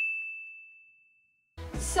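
A single bright ding sound effect: one high ringing tone struck once, fading away over about a second and a half.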